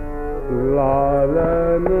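Hindustani classical vocal in raag Yaman Kalyan: a male voice enters about half a second in and holds long notes with slow glides between them over a tanpura drone, with a few sharp tabla strokes.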